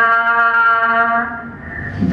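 A woman singing a Romanian Christmas carol (colindă) into a microphone, holding one long steady note. The note fades out about a second and a half in, and the next sung phrase starts at the very end.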